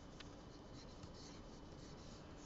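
Faint scratching of a pen stylus dragged across a graphics tablet's surface while a brush stroke is painted.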